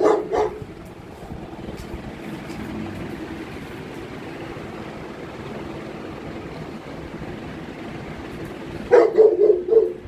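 A dog barking: two barks at the start, then a quick run of four or five barks about nine seconds in.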